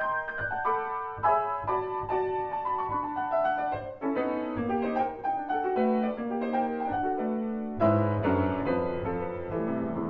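Grand piano played solo: the fast section of a new piano piece, a quick run of many separate notes, with a loud chord and low bass notes about eight seconds in.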